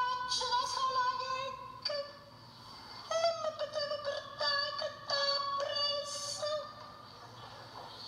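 A woman's voice chanting a high-pitched, sing-song mourning lament in drawn-out, wavering phrases, pausing about two seconds in and again near the end.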